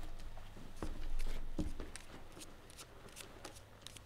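A few soft knocks as an electric guitar is set down, then a run of light clicks from playing cards being handled.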